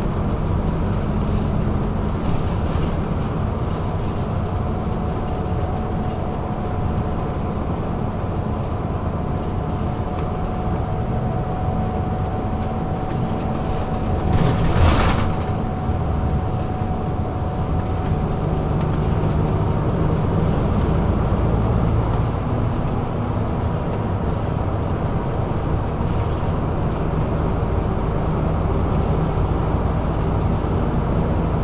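Inside a moving city bus: steady engine and road rumble with a faint steady whine. About halfway through comes a brief, loud hiss, the loudest moment.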